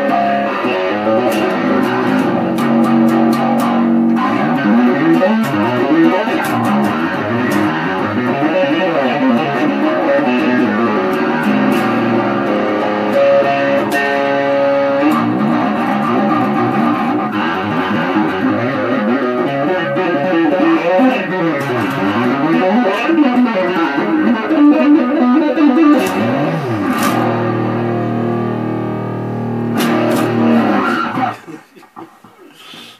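Electric bass guitar played with fast two-handed tapping: a continuous stream of rapid notes in rising and falling runs, settling onto held low notes near the end.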